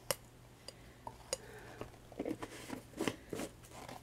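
Faint, irregular clicks and light scrapes of a metal palette knife against a plastic tub as leftover texture paste is scraped back into it, with small knocks as the tub is handled.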